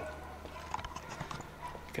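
Footsteps on a hard concrete floor, a scatter of light, irregular clicks and scuffs over a low steady background hum.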